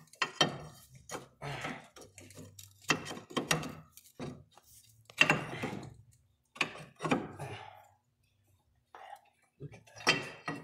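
Steel wrench clinking and rattling against a loose hydraulic line fitting as it is worked back and forth, in irregular bursts of metal knocks that stop shortly before the end.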